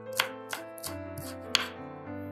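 Chef's knife chopping green onions on a wooden cutting board: several sharp chops, the loudest about a second and a half in, after which the chopping stops. Background music plays throughout.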